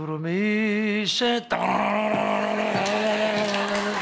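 A man singing a short ornamented Middle Eastern–style phrase, his voice wavering quickly up and down, then holding one long steady note. A wash of audience applause and cheering rises under the held note.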